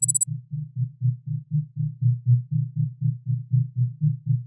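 Low, deep pulsing bass from the soundtrack, beating about four times a second. In the first quarter second a high, rapidly buzzing ring cuts off.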